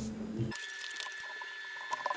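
Faint paper rustling and light taps as hands smooth stickers onto planner pages. The low room hum drops out abruptly about half a second in, leaving a faint steady high tone under small clicks near the end.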